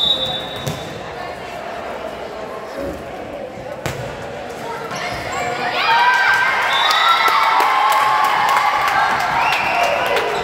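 A short referee's whistle blast at the start, then a few sharp hits of the volleyball during the rally. From about five seconds in, many high young voices shout and cheer loudly as the point is won.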